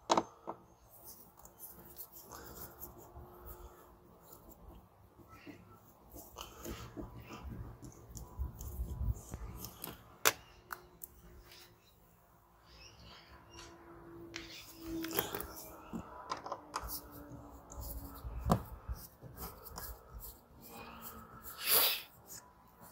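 Screwdriver backing screws out of a Toyota Land Cruiser 100 Series door trim panel: scattered clicks and knocks of the tool on the screws and trim, over a low rumble.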